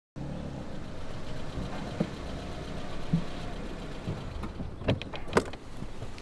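Steady low background of a parked car with a few sharp clicks from its door and keys, the loudest two near the end as the driver's door is unlatched and swung open.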